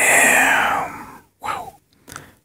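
A man's long sigh that fades away over about a second, followed by a brief, fainter breathy sound.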